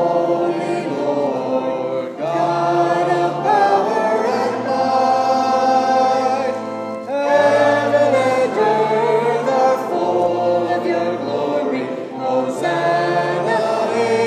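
A choir singing a sacred piece in sustained chords, in phrases of about five seconds with brief breaks between them.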